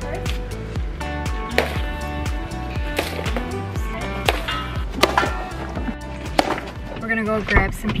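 Background music with a steady beat, with sharp whacks about every second or so from a stick hitting a piñata.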